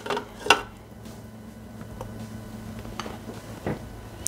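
Sausage pieces tipped from a glass bowl into a Thermomix's stainless-steel jug, with one short clink of bowl against jug about half a second in, then a few faint light knocks.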